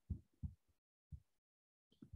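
Near silence, broken by three faint, brief low thumps in the first second or so.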